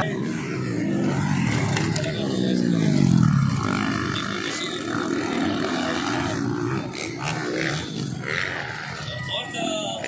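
Motocross dirt bike engines revving on the track, with one engine's note falling in pitch about two to four seconds in as the rider backs off the throttle.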